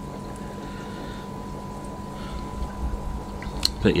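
Aquarium filters running in a fish room: a steady wash of bubbling, trickling water with a constant hum under it.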